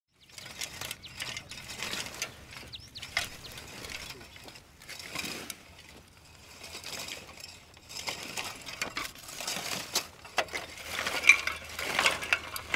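Tilmor Pioneer Rotovator, a hand-pushed rotary cultivator, its steel tines and star wheels clinking and rattling as they turn through dry, cloddy soil, in uneven bursts as it is pushed along.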